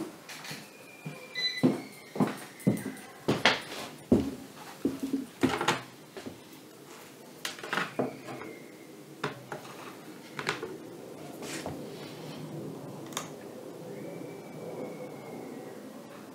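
Small tools and parts being handled on a hard workbench: irregular sharp clicks and knocks, busiest in the first half, with a few faint short high tones.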